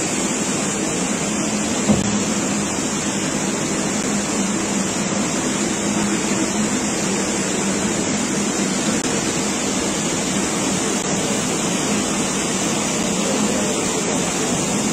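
Water released from the opened Mullaperiyar dam rushing and churning past in a steady, even rush, with one brief knock about two seconds in.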